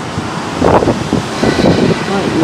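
Wind buffeting the microphone on a high balcony, over a steady rush of city traffic far below.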